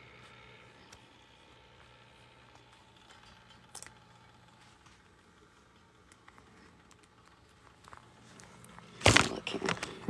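Quiet room tone with a few faint, scattered clicks, then rapid typing on a computer keyboard starting about a second before the end.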